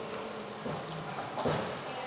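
A metal spoon knocks once against a plastic plate about one and a half seconds in, over steady background noise.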